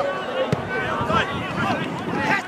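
Voices of players and spectators shouting over one another at a football match, with one sharp thud of the ball being struck about half a second in.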